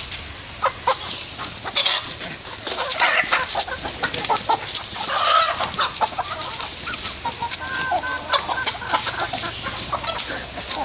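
A flock of domestic chickens clucking, many birds calling at once in a dense, continuous stream of short calls.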